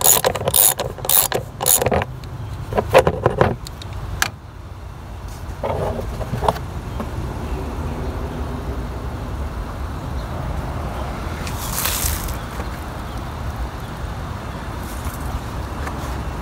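Ratchet wrench clicking at about four clicks a second as it backs a bolt out of a plastic engine cover, stopping about two seconds in. A few scattered knocks follow, then a steady low background rumble.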